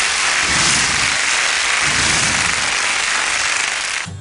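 A loud, steady rushing noise with no clear tones, a broadcast sound effect between a TV channel ident and a commercial; it eases off slightly near the end.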